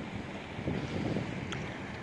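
Wind buffeting the microphone over the wash of water running out through the rocky inlet on the outgoing tide, with one faint click about a second and a half in.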